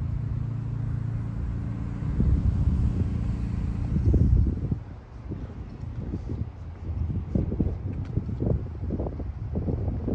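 A steady low engine hum, as of a car idling, for the first two seconds or so, then wind buffeting the microphone in uneven gusts.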